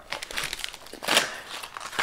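Paper fast-food fry sleeves crinkling as they are handled and set down on a plate, a string of rustles with the loudest about a second in.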